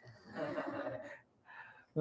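A faint, breathy human voice lasting about a second, much softer than the lecturer's speech.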